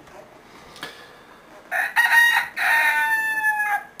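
A rooster crowing once: a long call through the second half, sinking slightly in pitch before it stops.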